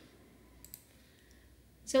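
A few faint computer mouse clicks a little over half a second in, against near-quiet room tone, as the designer view is switched to another form. A voice starts a word just at the end.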